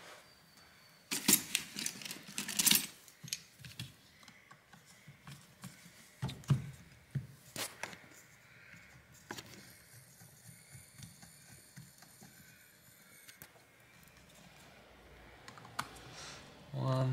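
Scattered clicks and clatter of hand tools and the plastic body of a JBL Flip Essential speaker being handled on a work mat, with a cluster of loud clicks a second or two in and a few more later on.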